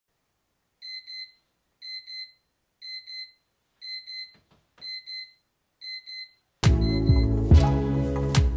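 Electronic alarm beeping in quick double beeps, one pair about every second, six times over. Loud music cuts in abruptly near the end.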